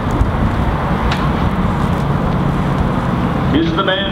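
Steady low rumbling background noise, with the announcer's voice starting near the end.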